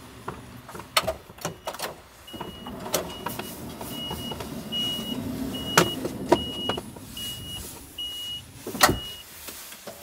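Toyota Hiace camper's power sliding door beeping its warning tone, one short beep about every 0.8 seconds, while someone climbs in with knocks and clicks. The beeping stops as the door shuts with a heavy thud near the end.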